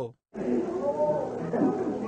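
Old tape recording of a church healing service: indistinct voices wavering over steady tape hiss, coming in after a brief dead-silent gap at an edit.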